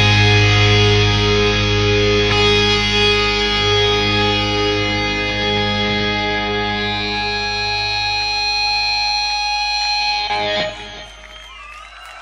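A heavy metal band's distorted electric guitars and bass holding one final chord, ringing out and slowly fading, with a high held note joining about seven seconds in. The chord cuts off sharply about ten and a half seconds in, leaving a much quieter tail.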